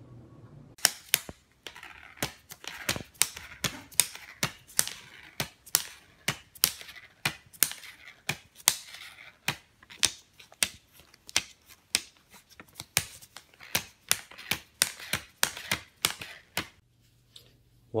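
A long, even series of sharp clicks, two to three a second, starting just under a second in and stopping shortly before the end.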